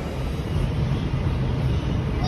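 Steady low rumble of an R211 subway car running, heard inside the car.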